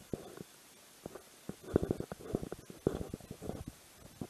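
Muffled rubbing and knocking of clothing against a body-worn action camera's microphone, in irregular bursts that come thick and fast in the second half.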